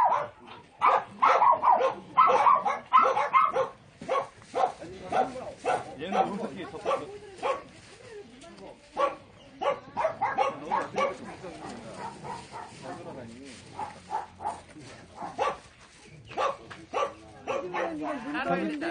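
Dogs barking in short, repeated barks, thickest and loudest in the first few seconds and then more scattered, with people's voices mixed in.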